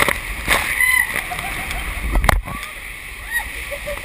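Water rushing and splashing around an inflatable raft sliding through the clear tube of the AquaDuck water coaster, with sharp splashes about half a second in and just after two seconds.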